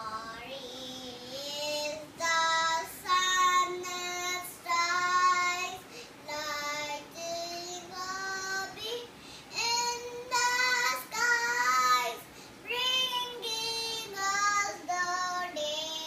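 A young girl singing a song alone, without accompaniment, in short phrases of held, sliding notes with brief pauses for breath.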